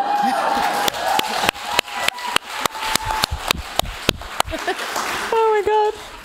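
Audience laughing, cheering and clapping in scattered claps, with one voice holding a long whoop for the first couple of seconds. The clapping dies away after about four and a half seconds, and a voice laughs or speaks near the end.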